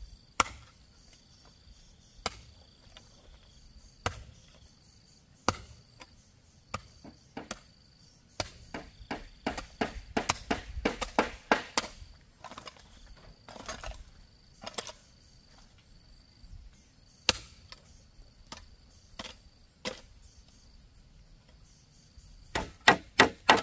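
A hoe striking stony soil: single sharp strikes a second or two apart, then a quick run of strikes and scraping for a few seconds in the middle, then slower strikes again. Insects chirr in a steady high tone behind it.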